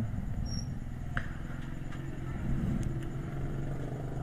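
Low, steady background hum and rumble, swelling slightly in the middle, with a faint click about a second in.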